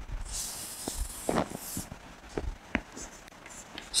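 Chalk writing on a blackboard: a scratchy stroke over the first two seconds, then a few short taps as more strokes are put down.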